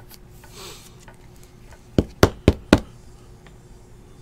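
Four quick sharp knocks about a quarter second apart: a card in a rigid plastic top loader tapped against the table to seat it. A faint sliding rustle comes just before, as the card goes into the holder.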